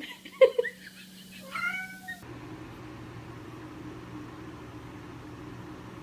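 Domestic cat meowing: a brief call under half a second in, then a couple of short, arching meows between one and two seconds. After that only a faint, steady low hum of room noise.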